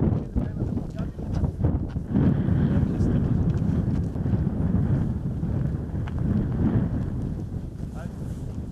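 Wind buffeting the microphone outdoors, a low, irregular rumble.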